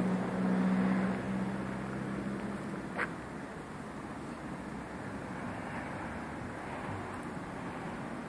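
Street traffic: a motor vehicle's engine hums steadily and fades away after about two and a half seconds, leaving a constant background of outdoor traffic noise. A single sharp click about three seconds in.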